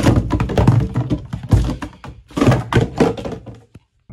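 Plastic soap bottles with cardboard armour taped on being knocked over and banged together in a bathtub, making a run of thunks, taps and crinkly clatter in several bursts.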